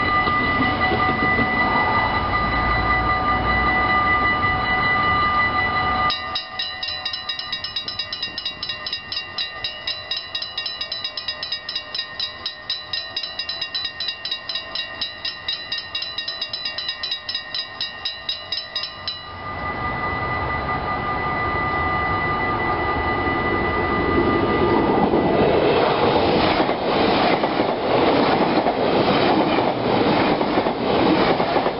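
Level-crossing warning bell ringing, with steady ringing tones at first and then a rapid, even run of strokes, about four a second, through the middle. Near the end a yellow-and-blue NS double-deck passenger train passes the crossing, its wheels running over the rails in a loud, building rush.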